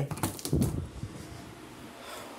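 Door knob turned and the latch clicking as a door is opened: a few sharp clicks and knocks in the first half second, then quieter handling rustle.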